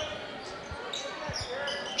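A basketball being dribbled on a hardwood gym floor, a few low bounces heard over the faint hubbub of the gymnasium crowd.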